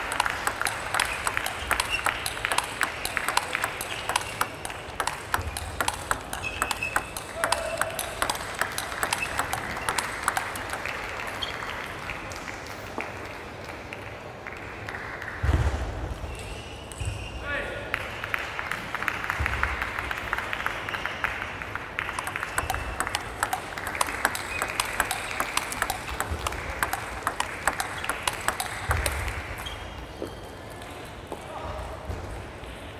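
Table tennis balls clicking off bats and tables, many sharp ticks a second, from rallies at more than one table in a large hall, with indistinct voices around. The clicking thins out about halfway through, where a single low thump is the loudest sound.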